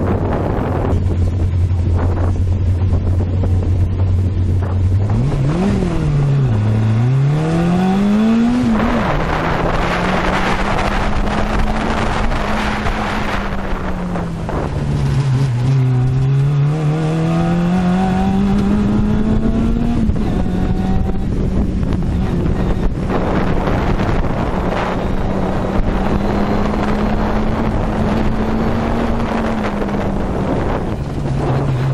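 Fiat 850 Spyder's small four-cylinder engine heard from the open cockpit on an autocross run: it holds steady revs, then from about five seconds in the revs climb and fall repeatedly, dipping twice, before holding fairly steady under load and dropping near the end. Wind buffets the microphone throughout.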